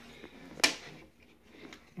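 A single sharp click about two-thirds of a second in, from handling the changing table's restraint-harness pieces, with faint handling noise after it.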